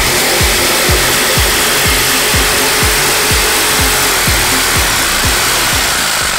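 Electric jigsaw cutting across a reclaimed pallet plank: a steady, loud rasping buzz of the blade going through the wood. A music track with a steady beat plays underneath.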